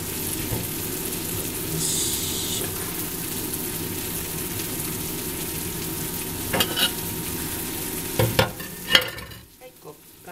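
Food sizzling in a hot frying pan, a steady hiss that cuts off suddenly near the end. A few sharp knocks come in the last few seconds.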